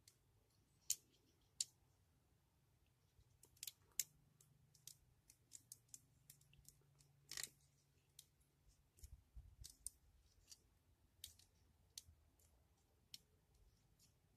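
Plastic parts of a Kotobukiya D-Style model kit clicking against each other as they are handled and pushed onto pegs and into slots: irregular sharp clicks, a few louder snaps among many small ones, with quiet between.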